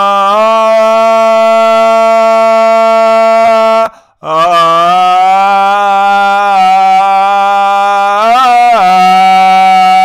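A man chanting long held vowel notes without words, each note steady in pitch, with a short break for breath about four seconds in and a brief waver in pitch about eight and a half seconds in.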